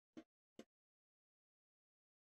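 Near silence, broken by two brief faint sounds less than half a second apart near the start.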